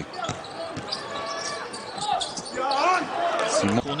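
Basketball game sound in an arena: a ball bouncing on the hardwood court among short knocks and high squeaks from play, with voices from the players and the crowd in the hall.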